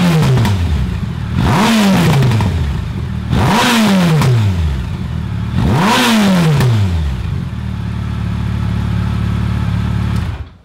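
Yamaha FJR1300's inline-four idling through Yoshimura R77 slip-on pipes with the baffles in, and blipped three times: each rev climbs quickly and falls back to idle over about a second.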